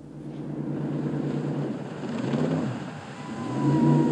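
Jet boat's engine running on the river, its pitch briefly swinging up and down about halfway through, then picking up and getting louder near the end.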